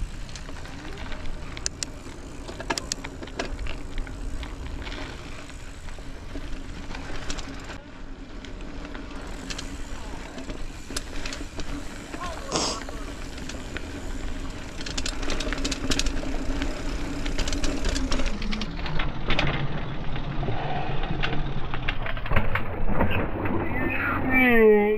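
Mountain bike being ridden over a trail, heard from the rider: wind and tyre noise with frequent rattles and knocks over bumps, and a steady hum that drops in pitch about three-quarters of the way through. Right at the end a falling cry comes as the rider goes over the bars.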